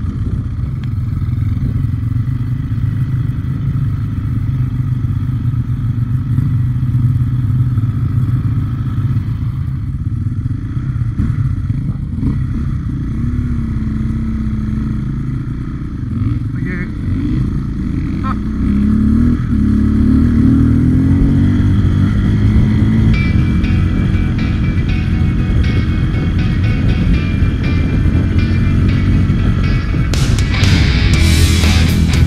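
Enduro motorcycle engine heard from the rider's camera on a dirt trail, running continuously with its pitch rising and falling as the throttle is worked. About two-thirds of the way in, rock music comes in over it.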